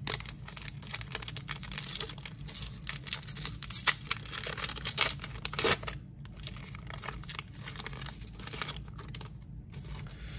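An Upper Deck hockey card pack's silver foil wrapper being torn open and crinkled in the hands: a dense crackle for about six seconds, then quieter rustling.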